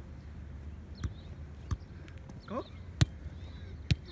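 Soccer ball being juggled: four sharp thuds of foot and body on the ball at uneven intervals, the third the loudest.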